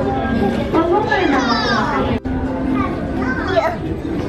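Young children's high voices, chattering and squealing as they play, over a steady low hum. The sound cuts out for an instant a little after two seconds.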